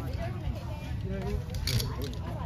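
Metal clicks and rattles of a zip-line harness's buckles and carabiners being fastened, with one bright click near the end, under voices and a laugh.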